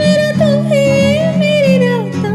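A woman singing one long held, wordless note with a wavering vibrato that slides down in pitch near the end, over strummed acoustic guitar chords.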